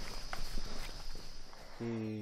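Footsteps of several people walking through undergrowth on a jungle trail: irregular light crunches and rustles of leaves and vegetation. A man's voice starts just before the end.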